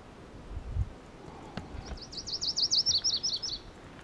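Virginia's warbler singing one song about two seconds in: a quick run of about ten slurred notes, the later ones lower and faster.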